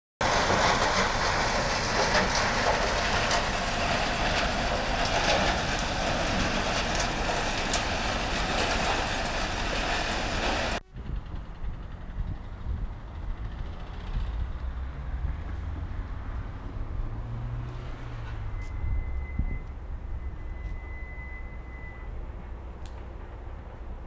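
Steady, loud machinery noise from a recycling plant's crushing and conveyor line. About eleven seconds in it cuts off suddenly to a much quieter low outdoor rumble, with a faint thin tone briefly near the end.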